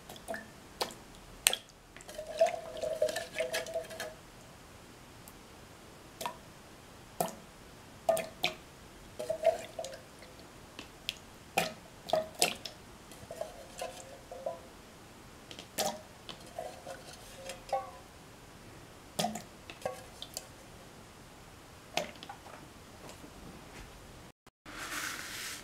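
Diced carrot pieces dropping one by one into a mixer jar of milk: irregular sharp taps and clicks, sometimes two or three close together, with a few short low ringing tones among them.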